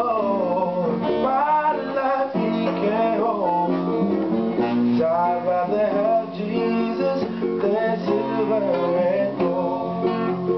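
Two acoustic guitars and a ukulele strummed together, with a man singing a gospel song over them.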